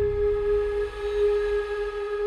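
Intro sound design: a sustained ringing drone, several steady tones held together like a struck bowl, over a low rumble that thins out in the second half.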